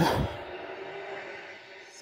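A pack of NASCAR Xfinity Series stock cars with V8 engines accelerating at full throttle on a restart, heard faintly through a television speaker as a steady, slowly fading engine noise. A man's voice trails off right at the start.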